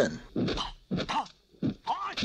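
Kung fu fighters' short, sharp shouts during a fight, about four in quick succession roughly half a second apart.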